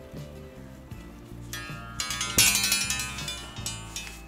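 Background music with steady pitched notes that grows fuller about halfway through, over a few light knocks from the wooden cuckoo clock case being handled and turned on the bench.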